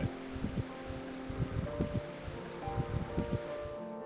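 Soft background music with sustained notes over a steady hiss of meltwater running and dripping off a thawing snow bank.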